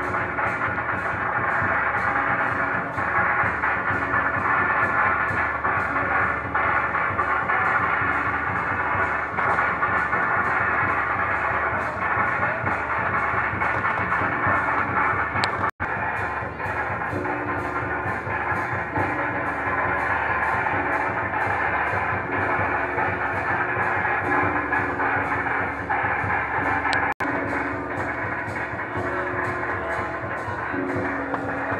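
Loud festival music of a temple procession: a steady beat with a melody of held notes over a dense, bright wash of sound. It drops out for an instant twice, about halfway and near the end.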